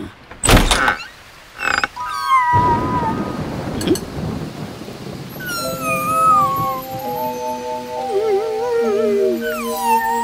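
Cartoon sound effects and score: a sharp thump about half a second in and a smaller knock just before two seconds, then a hiss of rain under gentle music with held notes and sliding, whistle-like tones.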